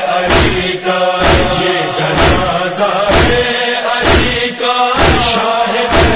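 Group of men chanting a nauha, a Shia mourning lament, in unison. Steady beats fall about twice a second in time with it: the chest-beating of matam.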